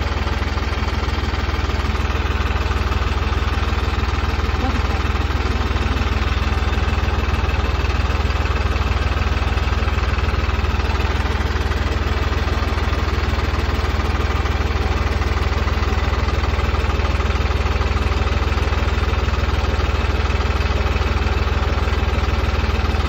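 New Holland 5620 diesel tractor engine idling steadily, left running while warm after hard work.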